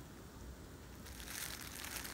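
Plastic bubble wrap crinkling faintly as it is handled, a little louder in the second half.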